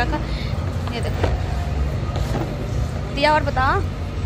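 A woman's voice, speaking briefly about three seconds in, over a steady low rumble.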